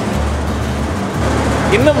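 A steady low mechanical hum, with a man starting to speak near the end.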